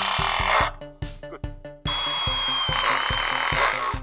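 Milwaukee M12 FUEL hydraulic oil-pulse impact driver driving a screw into a steel fence rail, in two runs with a steady high whine. The first run ends under a second in and the second runs from about two seconds in until near the end. Background music with an even beat plays throughout.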